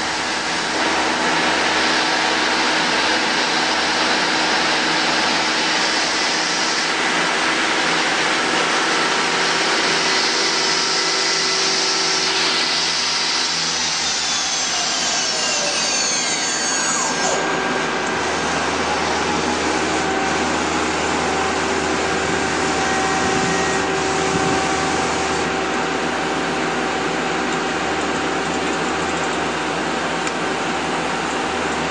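Spindle of a 2010 Mazak Quick Turn Nexus 200-II CNC lathe running at about 2,700 rpm with a steady whine, then winding down in a falling whine and stopping about 17 seconds in. The machine's steady running hum carries on after the spindle stops.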